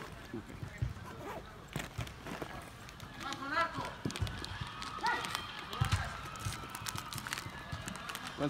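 Indoor soccer game in play: players calling out at a distance, with scattered sharp thuds of ball kicks and footfalls on artificial turf.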